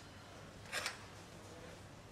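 One brief scrape of a dissecting instrument just under a second in, over faint steady room noise.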